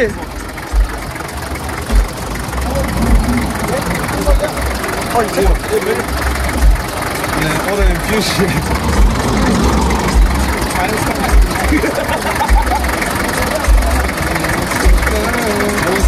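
Bus engine idling close by with its hood up, a steady dense running noise with irregular low thuds, and people talking faintly over it.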